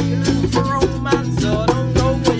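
Acoustic band music: an acoustic guitar strummed in quick, even strokes, with a hand drum keeping time over sustained low notes.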